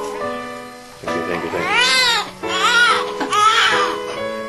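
A baby crying in short wails that rise and fall in pitch, three in a row starting about a second in, over background music with steady held notes.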